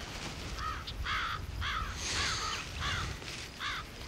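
A crow cawing over and over, about eight harsh, arched calls at roughly two a second, starting just over half a second in.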